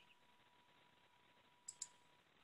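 Near silence on a video-call line, broken near the end by two quick clicks about a tenth of a second apart. A faint steady high tone runs underneath.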